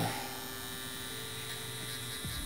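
Two FK Irons Exo wireless rotary tattoo machines running together while needling skin, a steady electric hum.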